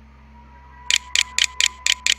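A computer mouse button clicked repeatedly, about four sharp clicks a second, starting about a second in, as the on-screen keyboard's arrow key is pressed again and again. A faint steady high tone runs underneath.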